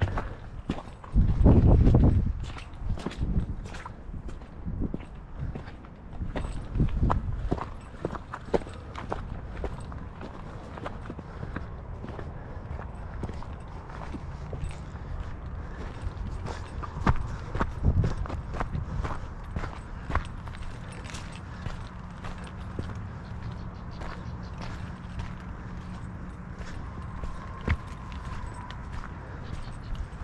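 Footsteps on a rocky dirt trail, an irregular run of small knocks and scuffs as the camera is carried along, with a loud low rumble about a second in.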